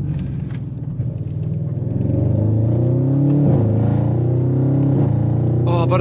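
Audi RS7 C8's V8 with an unsilenced Milltek exhaust and its valves open, heard from inside the cabin: a deep, ridiculously loud note that rises in pitch from about two seconds in, dips briefly about halfway, then climbs again as the car pulls.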